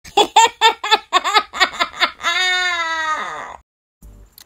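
A high-pitched voice laughing in a quick run of about nine syllables, then holding one long note that sags slightly near the end before cutting off.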